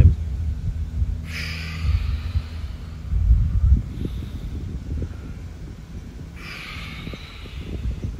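A man's two long, audible breaths while he pulses in and out of downward-facing dog, one about a second in and one near the end, over a continuous low rumble.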